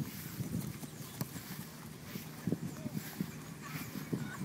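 Running footsteps and ball touches on grass: a series of short, irregular low thuds, with one sharper tap about a second in.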